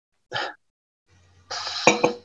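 Brief non-speech vocal sounds over a video call: a short chuckle, then a breathy noise with a sharp click near the end, with dead silence between them.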